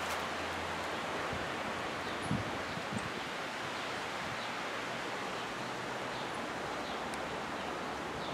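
Steady outdoor ambient hiss, an even wash of background noise, with two brief low thumps a little after two and three seconds in.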